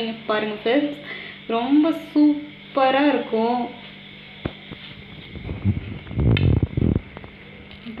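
A woman talking briefly, then a single light click of a metal fork against a ceramic plate about four and a half seconds in, followed by about a second and a half of muffled low rustling.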